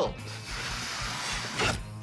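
A person blowing one long steady breath through a snorkel to inflate a balloon, an airy hiss lasting about a second and a half, over background music.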